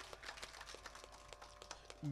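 Faint, scattered hand clapping: light applause with many small, irregular claps.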